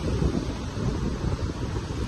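Wind buffeting the microphone: a steady low rumbling noise.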